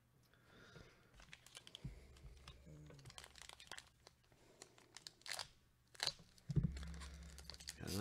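Foil trading card pack being torn open by hand: faint crinkling and tearing of the foil wrapper in a scatter of small crackles, with low handling rumbles twice.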